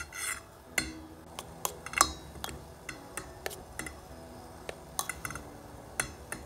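Mini stainless-steel whisk stirring shea butter as it melts in a stainless-steel bowl, its wires clinking and ticking irregularly against the bowl.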